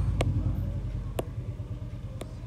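Steady low background rumble, with two sharp clicks about a second apart.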